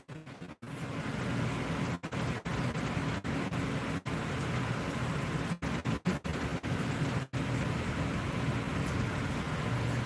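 Steady rushing noise with a faint low hum, broken by several brief dropouts where the sound cuts out for an instant.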